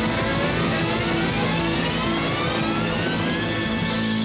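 Live rock band holding a sustained chord while a synthesizer tone glides steadily upward in pitch through the whole stretch.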